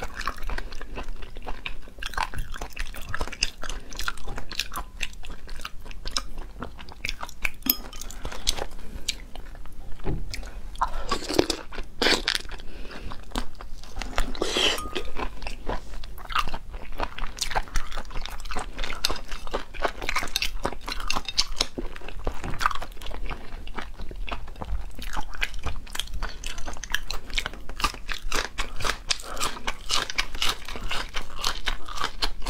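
Close-miked eating: shell cracking and peeling off large raw tiger prawns and the meat being chewed, a steady run of small crackles, clicks and wet mouth sounds, with a few louder crunches partway through.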